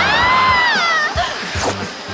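A girl's long high-pitched scream, held for about a second and then falling away, over background music.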